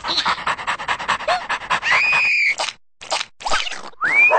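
Cartoon dog panting quickly with its tongue out, a fast run of short breaths, followed about two seconds in by a short high held vocal note and then a few brief breathy sounds near the end.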